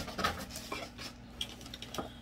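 Small objects being handled and set down, with a sharper knock at the start and scattered light clicks and rustles after.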